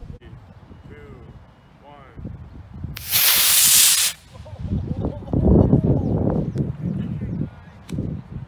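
Estes B6-4 black-powder model rocket motor firing at liftoff: a loud rushing hiss that starts about three seconds in and cuts off after about a second, as the motor burns out.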